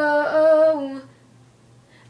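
A woman singing unaccompanied, holding a sung note that wavers slightly in pitch and fades out about a second in.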